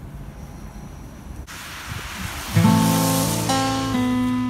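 Background music: strummed acoustic guitar chords start about two and a half seconds in, loud and ringing. Before them is a low outdoor rumble.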